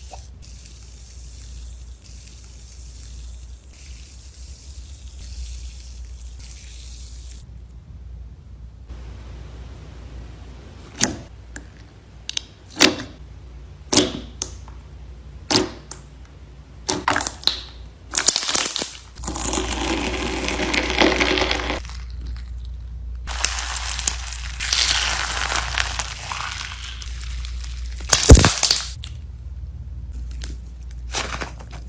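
Slime being squeezed and pressed by fingers: soft, quiet squishing at first, then a run of sharp separate pops and clicks from a thick slime. Later come two longer stretches of wet crackling squelches, and one loud pop near the end.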